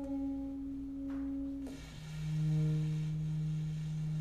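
Alto saxophone and cello playing free improvisation in long, nearly pure held tones. One sustained note breaks off a little before halfway, and a lower, louder note takes over and holds steady.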